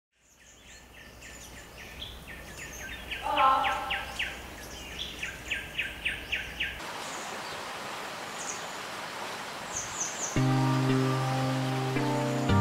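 Forest ambience fading in, with birds calling in quick series of short notes. About seven seconds in it gives way to a steady hiss with a few high chirps, and near the end background music with sustained low chords comes in.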